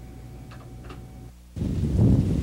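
A low steady hum with two faint ticks, then about one and a half seconds in a sudden, much louder low rumbling of wind buffeting the microphone in an open field.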